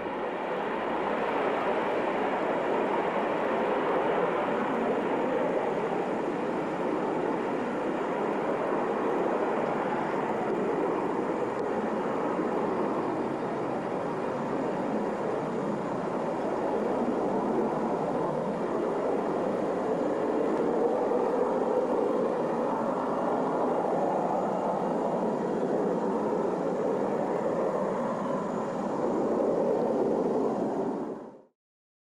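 Jet noise from an F-4G Phantom II's two J79 turbojets as it climbs away after takeoff: a steady rushing noise with slight swells.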